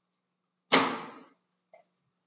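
An aquarium's hinged lid dropped shut: one sharp clap that fades over about half a second, followed by a small tap near the end.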